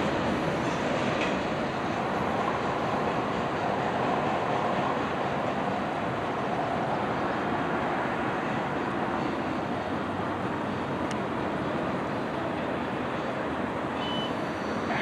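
Mixed freight train's cars rolling away along the track, a steady rail rumble with wheel noise.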